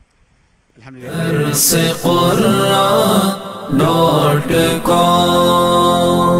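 After about a second of near silence, a loud unaccompanied vocal chant begins, with long held notes that change pitch every second or so.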